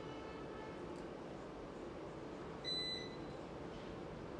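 A single short electronic beep about three-quarters of the way through, over a steady low hum of equipment in the room.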